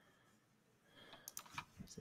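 Faint clicking of computer keys, about five quick clicks in the second half after near silence.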